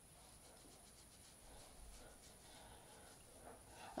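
Near silence: room tone, with a few faint soft rustles from a fluffy makeup brush being tapped off and brushed on.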